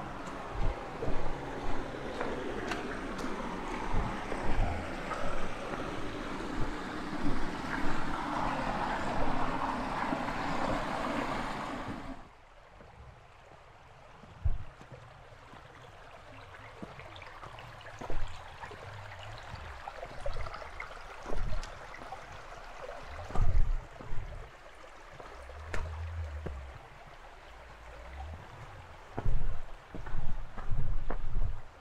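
Running water of a small rocky forest stream, a steady rushing noise, with low thumps of footsteps on the trail. About twelve seconds in the rushing drops off abruptly to a much quieter stream sound, and the footstep thumps carry on.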